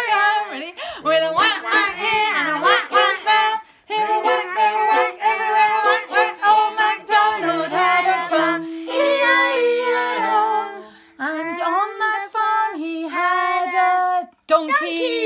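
Children and a woman singing a nursery song together, with a fiddle playing along.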